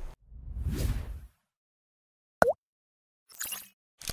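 Sound effects of an animated logo: a swelling whoosh, then a single short blip that swoops down and back up in pitch about two and a half seconds in, and a brief swish near the end.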